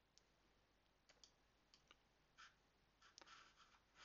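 Near silence broken by a handful of faint, short clicks, scattered at first and coming closer together around three seconds in.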